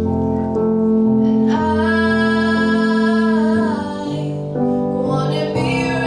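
Teenage girl singing a pop ballad live into a microphone over an instrumental backing, holding one long note from about a second and a half in until nearly four seconds, with a vibrato at its end.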